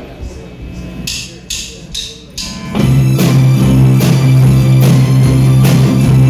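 Four evenly spaced clicks counting in, then about three seconds in a rock band comes in loud on electric guitar and drums, with a strong steady low note and regular drum hits.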